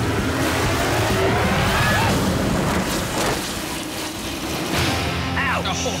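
A sled runs down a steep slide under spraying water and splashes into a pool, giving a steady rushing hiss of water. A voice cries out about one to two seconds in, and background music comes up near the end.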